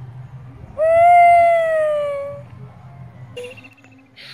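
A boy's long drawn-out wailing cry, held for about a second and a half and falling slowly in pitch.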